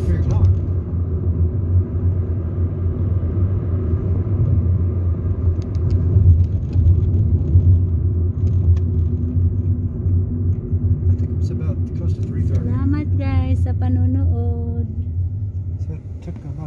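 Inside a moving car: a steady low rumble of engine and tyre noise. A person's voice sounds briefly near the end.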